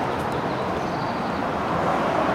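Steady, even hum of city traffic with no distinct events standing out.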